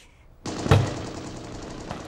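Battle sound effect of gunfire: a sudden loud bang with a low boom just under a second in, followed by a dense noise that slowly fades.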